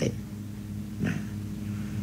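A pause in a man's talk, filled by a steady low electrical hum, with a brief faint voice sound about a second in.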